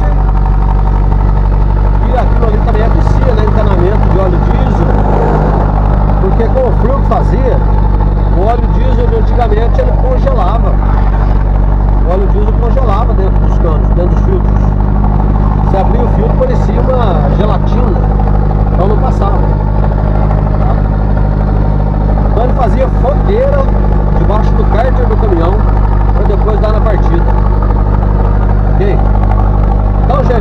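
Steady low engine drone and road noise inside a moving vehicle's cab, with indistinct voice-like sounds over it.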